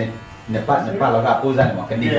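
People talking, with the steady buzz of electric hair clippers under the voices.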